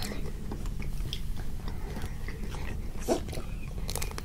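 Close-up chewing and crunching of chocolate-and-almond coated ice cream bars, with scattered small crackles of the hard chocolate shell and one louder crunchy bite about three seconds in.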